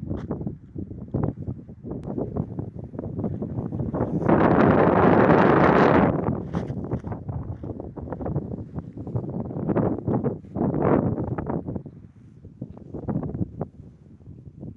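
Wind buffeting the phone's microphone in irregular gusts, loudest for about two seconds in the middle.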